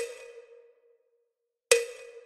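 Two sharp metronome clicks about 1.75 s apart, each ringing briefly with a pitched tone that fades out, over a bar of rest in the exercise.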